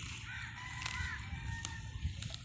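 A bird calling: two short arched calls about half a second apart, with a thin, steady whistled tone held under and after them, over a low background rumble.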